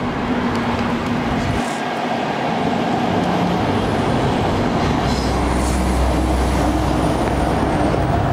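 Road traffic: a steady rush of passing vehicles, with a heavy vehicle's low rumble coming in over the second half.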